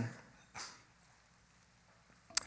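A man's short breath into a close headset microphone, then quiet room tone.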